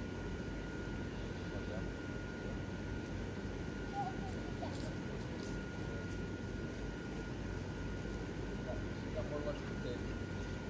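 Steady drone of the airblown inflatables' electric blower fans running, with a thin steady whine over it. Faint voices break in briefly a couple of times.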